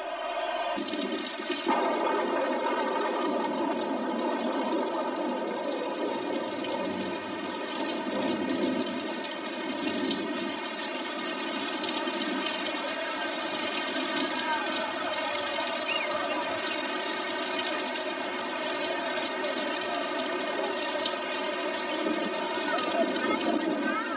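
Rain falling steadily, a continuous even wash of noise.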